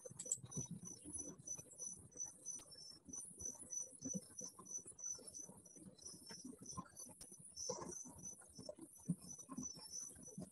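Crickets chirping steadily, about three short high chirps a second, faint, with small knocks and rustles underneath.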